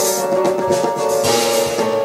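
Live trio music on keyboard, double bass and drum kit: sustained keyboard chords over the bass, with a cymbal wash swelling up a little past halfway.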